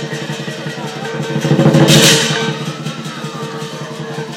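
Lion dance percussion: a large Chinese drum beaten in a rapid, steady roll with clashing cymbals and gong ringing over it. The playing swells louder about two seconds in, with a bright cymbal wash, then eases back.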